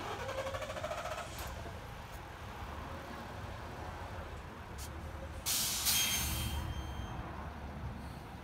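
New Flyer XN40 natural-gas transit bus running at low speed, with a short burst of air at the start and a loud hiss of air from its air brakes about five and a half seconds in, lasting about a second, as the bus moves off.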